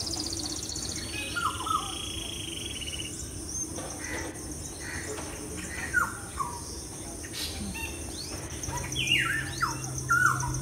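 Several songbirds chirping and calling, with short downward-sweeping calls and fast high trills over a steady high insect-like hum; the calls are loudest a few seconds before the end.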